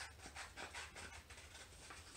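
Scissors cutting through a sheet of paper: a quick run of faint snipping clicks.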